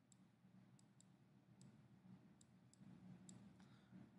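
Near silence with about seven faint, sharp clicks at irregular intervals, from the stylus as an equation is handwritten on a digital whiteboard.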